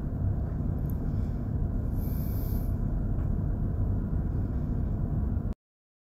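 Steady low rumble of running machinery in a ship's engine room, with a faint hiss about two seconds in; it cuts off suddenly near the end.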